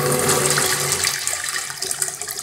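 Zurn urinal flushing: a steady rush of water from the flush valve into the porcelain bowl, easing slightly near the end.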